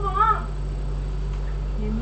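A brief, high, wavering vocal sound from a woman just after the start, over a steady low electrical hum.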